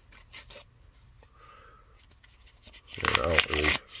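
Soft rustling and a few light ticks of a paper mailing envelope being handled, then a man starts talking near the end.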